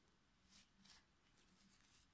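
Near silence, with two faint, brief rustles about half a second and a second in: yarn being drawn through knitted stitches with a crochet hook.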